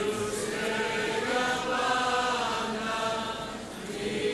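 A church congregation singing a hymn together in Greek, with long held notes.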